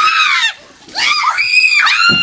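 Young woman screaming as a bucket of ice water is dumped over her: a short high shriek, a brief break, then a longer held scream starting about a second in.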